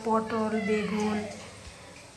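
A woman's voice speaking in drawn-out tones for about the first second, then fading to quiet.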